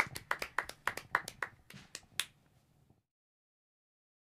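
A few people clapping their hands, the claps thinning out and fading over about two seconds, then the sound cuts off to silence.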